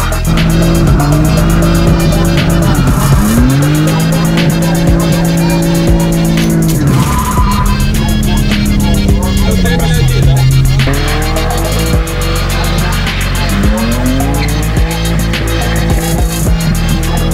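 BMW E30 engine revving up and dropping back again and again, with tyre squeal as the car drifts, mixed under a music track with a steady beat.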